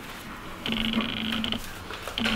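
A man's short held hum, just under a second long, starting about half a second in.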